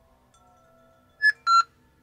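Two short electronic beeps from ghost-hunting equipment, the second a little lower in pitch than the first, a quarter-second apart.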